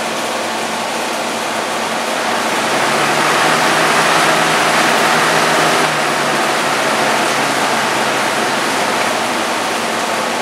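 Old box fan running, a steady rush of air over its motor hum. It swells louder over a couple of seconds as the speed knob is turned up, then steps down a little near the middle as the knob is turned again.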